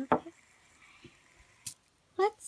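Faint sound of a fidget spinner with metal bearings spinning on a tabletop, with a few light ticks and a sharp click near the end as fingers catch it.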